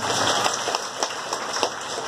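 Audience applauding: a dense, even patter of many hands clapping.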